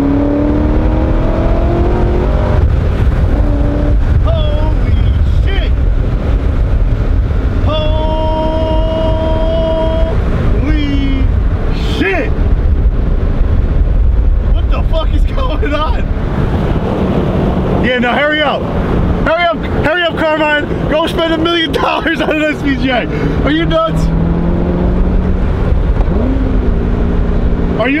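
Cabin sound of a C6 Corvette Z06's 7.0-litre V8 under hard acceleration: the revs climb for the first couple of seconds, then it runs on as a heavy, steady low drone.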